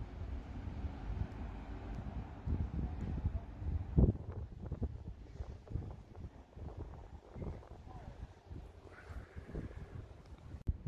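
Wind buffeting the microphone in a low, uneven rumble, with a single thump about four seconds in.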